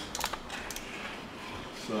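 A few light clicks and rattles, most in the first second, as hands handle the edge-tape holder of a Virutex PEB250 portable edgebander.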